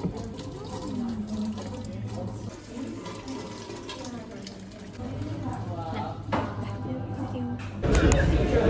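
Water running from a small tap over hands and into a stainless-steel bucket as the hands are rinsed, over a low steady hum.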